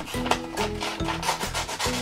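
Scissors cutting through a sheet of painted paper, a run of repeated snips, with steady background music underneath.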